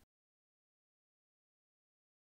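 Dead silence: the sound track is muted, with not even room tone.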